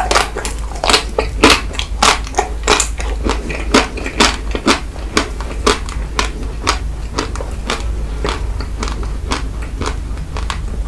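Close-miked biting and chewing through the hard chocolate coating of ice cream bars: crackling crunches about twice a second, growing fainter in the last couple of seconds.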